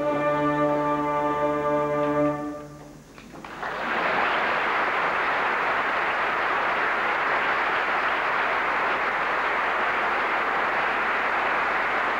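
An opera orchestra holds a closing chord for about two and a half seconds, then dies away. About a second later, steady audience applause starts and keeps on.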